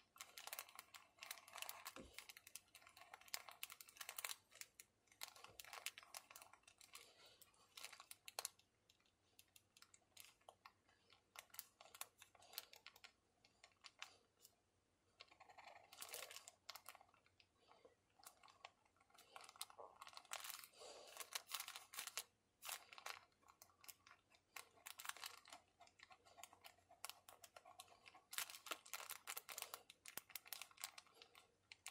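Faint scratching and light tapping of a pen nib on paper: broad stripes and then rows of looping and zigzag strokes, in irregular runs with short pauses.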